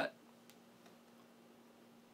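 Near silence: room tone with a faint, steady hum from a running air conditioner, heard through a shotgun microphone with its 150 Hz low-cut filter switched on. There is one faint click about half a second in.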